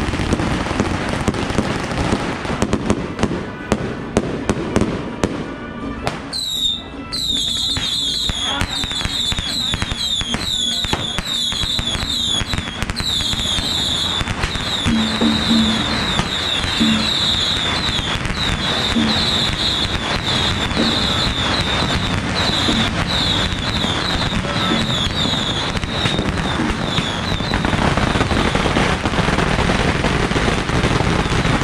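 Firecracker strings crackling in rapid, dense bursts during a temple procession. After about six seconds this gives way to a loud crowd din with a repeated high chirping over it, and the crackle swells again near the end.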